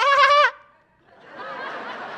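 A man's voice holds one word for about half a second. After a short pause, a comedy-club audience starts laughing a little over a second in.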